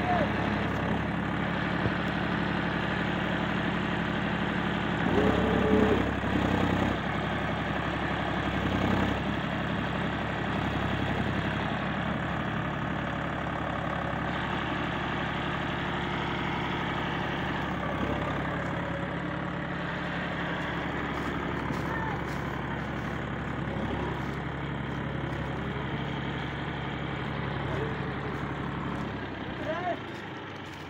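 John Deere 5050D tractor's diesel engine running hard under load, pulling a trailer up a muddy slope with the front end lifting; it swells briefly about five to seven seconds in, then runs steadily.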